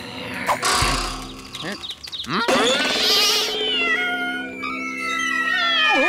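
A cartoon cat's cries over background music, with cartoon sound effects whose pitch slides downward in the second half.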